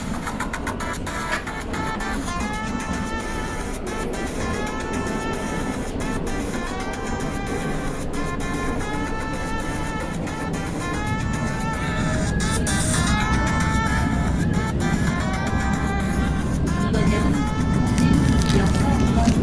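Seoul Metro Line 2 subway train running between stations, a low rumble that grows louder in the second half, with music playing over it.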